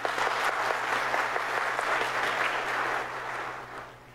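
A congregation applauding, fading away over the last second.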